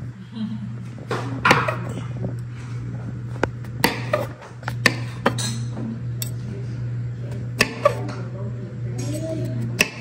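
A chef's knife slicing button mushrooms on a wooden cutting board: a series of sharp taps as the blade goes through and strikes the board, unevenly spaced, about nine in all.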